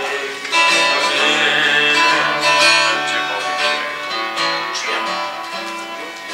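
Live acoustic folk song: a steel-string acoustic guitar strummed with mandolin and fiddle accompaniment, and a man singing, his voice rising back in just after the end.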